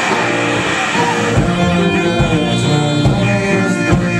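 A live rock band playing: electric guitars and bass sustaining chords, with the drum kit's low hits coming in about a second and a half in and landing roughly once a second after that.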